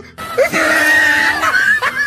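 A child's long, high scream, held for about a second and a half, starting suddenly just after the start, over the rush of breaking waves.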